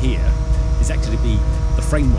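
Engine of a lorry-mounted crane running steadily with a low rumble and a constant drone while it lifts a pallet of timber, under a man's talking voice.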